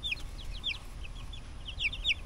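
Two-week-old chicks peeping: a run of short, high cheeps, each falling in pitch, several a second.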